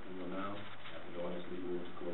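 Indistinct, murmured conversation of a few voices in a meeting room, with no clear words.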